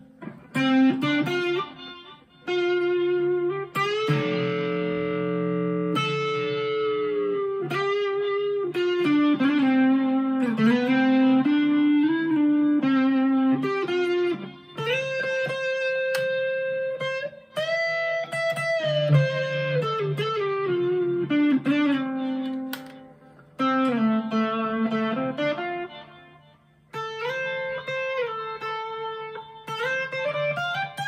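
Harley Benton SC-Custom II humbucker electric guitar played through an amp: a lead line of sustained single notes with string bends and vibrato, broken by a few short pauses.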